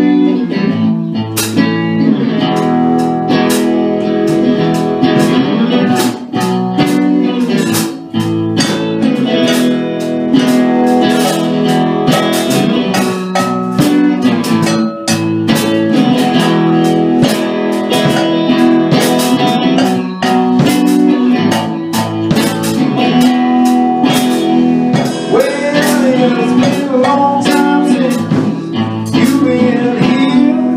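Live band music: electric guitar played over a drum kit, with steady drum and cymbal hits throughout.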